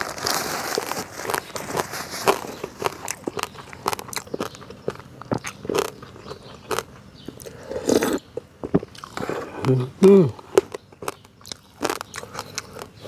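Close-miked eating sounds: chewing and crunching of boiled whole frog, with many wet mouth clicks and smacks. Short hummed "mm" sounds come about 8 and 10 seconds in.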